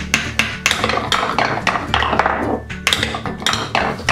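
A wooden toy hammer knocks a red wooden ball down through the hole of a wooden pound-a-ball tower. The ball then clatters down the tower's zig-zag wooden ramps in a quick run of sharp wooden knocks.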